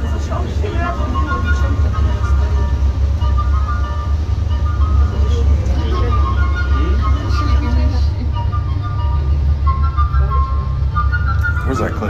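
Inside a moving aerial tramway cabin: a steady low rumble under passengers talking, with a simple tune of high, short tones running through.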